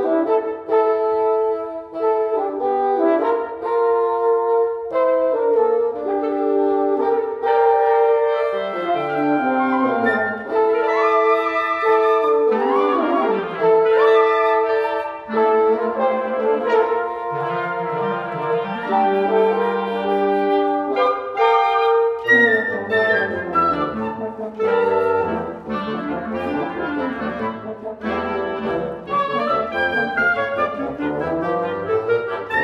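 Wind quintet of flute, oboe, clarinet, bassoon and French horn playing live together: sustained chords at first, then quicker running passages, with a low bassoon line coming in about halfway and a denser, busier stretch in the last third.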